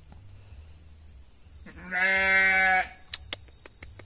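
A goat bleating once: a single steady call of about a second, near the middle. A few sharp clicks and a thin high steady tone follow.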